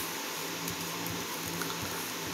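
Room tone: a steady, faint hiss with a low hum underneath and a few tiny ticks.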